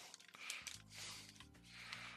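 Faint background music: low sustained notes that change every half second or so, with a few light rustles of a foil card-pack wrapper being handled.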